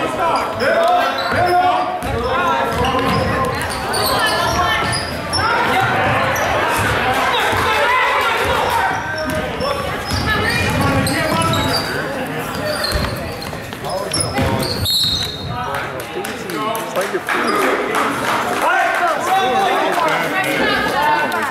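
A basketball bouncing on a hardwood gym floor during live play, under many overlapping voices of players and spectators, all echoing in a large gym.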